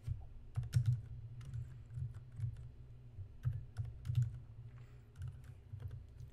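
Typing on a computer keyboard: irregular keystrokes, about three a second, each a sharp click with a dull low thud.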